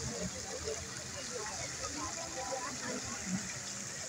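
Water falling in thin streams from a rain-curtain fountain, a steady hiss, with people talking in the background.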